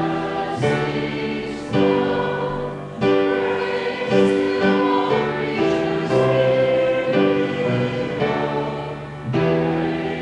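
Church choir singing with keyboard accompaniment, in long held notes that change every second or so.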